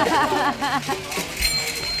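Children's voices shouting and calling while they play, loud enough to be called "lawaai" (noise), with a high ringing tone coming in about one and a half seconds in.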